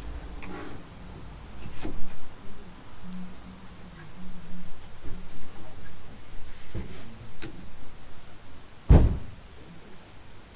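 A few light metal clicks and knocks as a front brake caliper is worked back over new pads onto its carrier, with one louder thud near the end.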